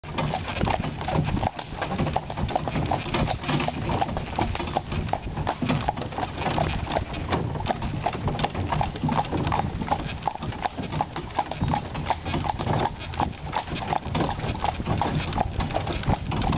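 Horse's hooves clip-clopping steadily on a gravel track as it pulls a carriage, over the constant low rumble of the carriage wheels rolling.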